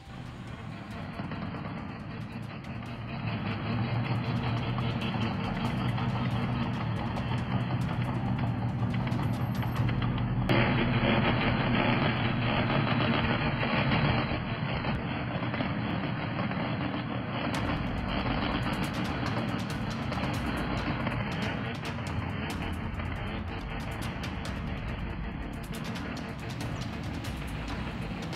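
Motorcycle engines revved hard and held against the rev limiter, an excessive, continuous racket heard through a phone recording. The noise builds over the first few seconds and turns louder and harsher about ten seconds in.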